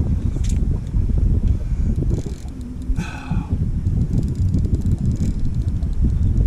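Wind buffeting the microphone on an open boat, a steady rough rumble. A brief pitched sound cuts through about three seconds in.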